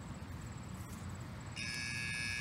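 Faint outdoor background, then a steady high buzz made of several constant tones switches on suddenly about a second and a half in and keeps going.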